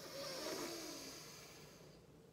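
A woman's long audible breath in, a breathy hiss that swells about half a second in and fades away over the next second and a half.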